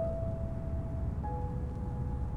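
Quiet background music: soft sustained tones that move to a new chord about a second in, over a steady low rumble.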